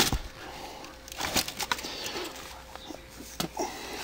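Handling noise of cans and cardboard boxes being shifted on a pantry shelf as a box of corn muffin mix is pulled out: a sharp knock at the start, then scattered short knocks and rustles.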